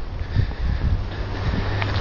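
Low, steady rumble of wind buffeting a handheld phone's microphone outdoors.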